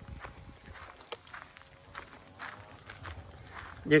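Footsteps on a gravel path: a person walking, each step a short, soft scrunch at an uneven pace.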